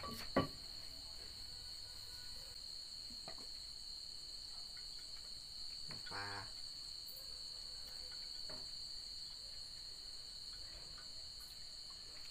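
Crickets chirping in a steady, continuous high-pitched trill, with one sharp knock just after the start.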